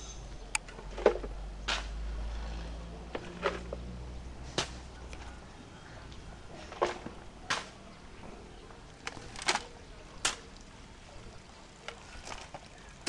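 About a dozen short, sharp knocks and clicks at irregular intervals, with a low rumble underneath during the first five seconds.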